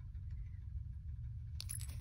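Faint, steady low background rumble, with a small click about one and a half seconds in as a metal enamel lapel pin is set down on a concrete floor.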